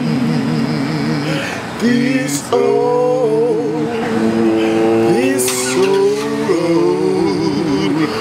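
Men singing a wordless gospel-style vocal run in harmony: long held notes with wide vibrato that slide from one pitch to the next.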